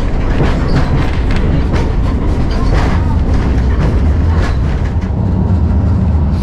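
Interior of an old CFR Malaxa diesel railcar under way: a steady low rumble of engine and running gear, with irregular clacks of the wheels over the track.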